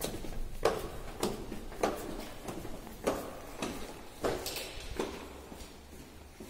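Footsteps on a hard stairwell and tiled floor, a steady walking pace of roughly one and a half steps a second that fades toward the end. A brief hiss comes about four and a half seconds in.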